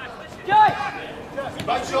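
A voice on the pitch sideline calls out once, a short rising-and-falling shout about half a second in, over faint outdoor background noise; someone starts speaking near the end.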